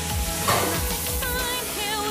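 Background pop song over a steady sizzling hiss, with a sung melody coming in about a second in.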